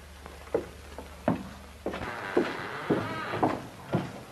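Footsteps on a floor, about two a second, over the hiss of an old optical film soundtrack. A low hum in the soundtrack stops about two seconds in.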